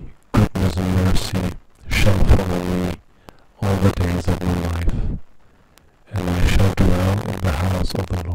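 Playback of an InClip microphone recording from an ITC experiment: a series of buzzy, distorted, voice-like bursts, each about a second long, with short gaps between them and no clear words.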